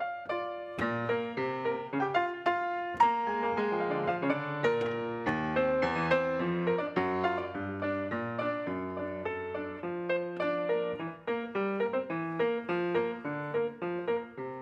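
Solo piano playing a quick, flowing passage, several notes a second over held bass notes.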